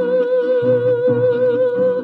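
Mariachi music, a son jalisciense: one long held note with vibrato over the steady rhythm of plucked bass and strummed guitars.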